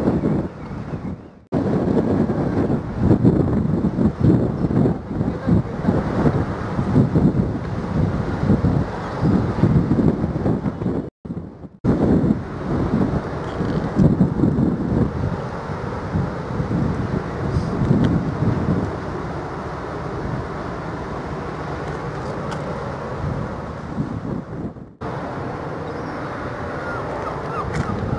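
Wind buffeting the camera microphone in uneven gusts, settling to a steadier rush in the last few seconds. The sound cuts out briefly about a second in, near the middle and near the end.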